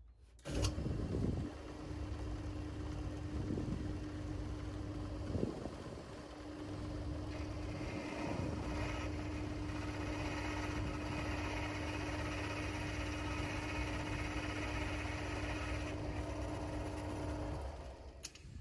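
Belt-driven metal lathe switched on about half a second in and running steadily, with its motor hum and the rumble of belts and gears; a higher hiss joins for much of the second half. It shuts off just before the end.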